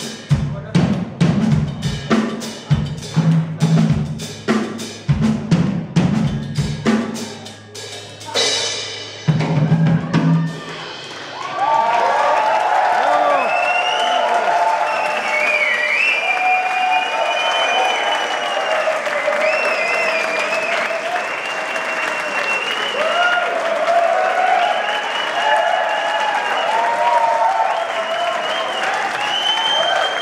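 Drum kit played by three players at once: a dense pattern of drum and cymbal hits that ends about ten seconds in with a final ringing crash. An audience then applauds and cheers steadily until the end.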